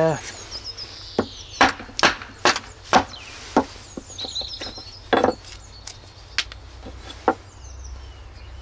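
Small hatchet, set in a short section of green lime wood, knocked on its back with a loose block of wood to drive it through and split the piece: about nine sharp wooden knocks, unevenly spaced.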